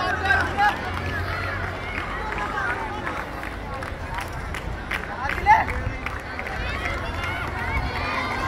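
Voices of a crowd of spectators shouting and chattering outdoors, with one louder shout about five and a half seconds in.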